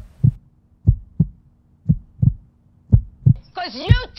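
Heartbeat sound effect: pairs of low thumps, lub-dub, about one beat a second, over a faint steady hum. A voice comes in near the end.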